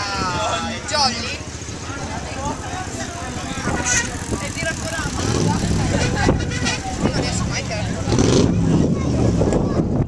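Chatter of many voices from a crowd of riders and helpers at a cycling start line, joined about halfway through by a heavier low rumble that could be wind on the microphone or engines.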